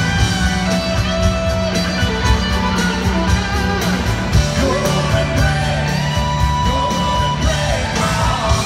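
Live band performing a country-pop duet: a steady drum beat and acoustic guitar, with a singing voice holding notes from about a second in.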